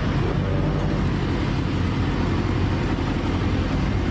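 Steady low rumble of a motor vehicle engine running nearby.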